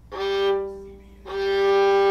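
Bird's-eye maple violin strung with Evah Pirazzi strings, bowed: a first note that swells and fades away, then the same note bowed again and held.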